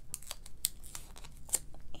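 A die-cut piece of foil paper being handled and folded by hand: a run of short, crisp paper crackles and clicks, the two sharpest at about two-thirds of a second and a second and a half in.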